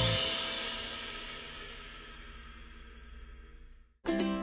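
Background music ending: a last held chord rings on and slowly fades away to near silence near the end.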